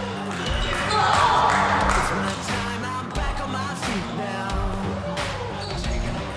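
Background pop song with a steady beat, a bass line and a singing voice.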